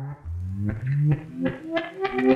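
Intro music: a run of pitched notes stepping from one to the next, with short percussive clicks, growing louder as it builds toward a fuller beat.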